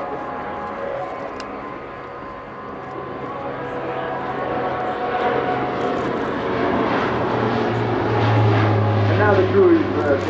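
Alenia C-27J Spartan twin-turboprop transport flying past low overhead, its Rolls-Royce AE 2100 engines and propellers making a steady droning tone. The sound grows louder from about a third of the way in, with a deep low note strongest near the end.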